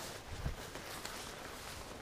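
Footsteps through long grass, with one heavier footfall about half a second in.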